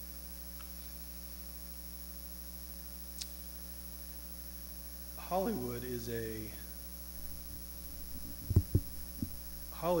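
Steady electrical mains hum, a low drone with several higher overtones. A few words of speech break in about five seconds in, and a few short knocks come near the end.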